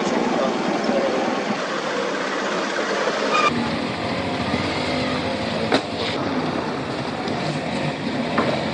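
Road traffic noise with motor vehicle engines running. The sound changes abruptly about three and a half seconds in, and there is a single sharp click near six seconds.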